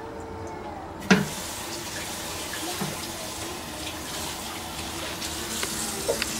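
A toilet being flushed: a sharp click of the handle about a second in, then steady rushing water filling the bowl of a toilet with a blockage.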